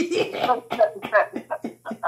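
A man laughing hard in quick repeated bursts, about four a second, with coughs mixed in.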